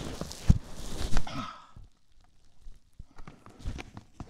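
Handling noise as a full-face AGV motorcycle helmet with a lavalier microphone inside it is pulled off the head: rubbing and scraping of the padding, with several knocks, busiest in the first second and a half, then quieter with a few scattered clicks.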